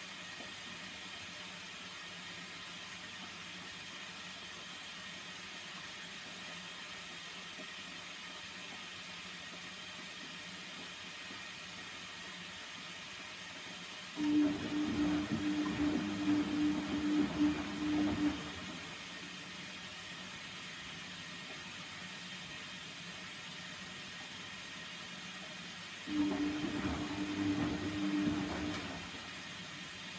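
Bendix 7148 washing machine running in two bursts of about four and three seconds. Each burst starts suddenly and carries a steady hum with uneven, churning noise. Between the bursts there is only a low steady hiss.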